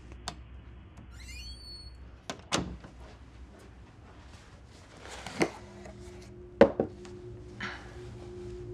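A short squeak and a thunk as a closet door is shut, followed by a few sharp knocks and thuds of a box being set down and handled on a bed.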